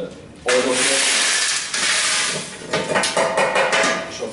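Jaw-crushed rock fragments poured from a metal tray into the steel hopper of a toothed gyratory crusher: a loud rushing rattle for about two seconds, then many scattered clicks as the last pieces drop in.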